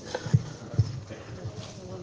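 A few short, dull low thumps, the loudest two in the first second, over faint background voices.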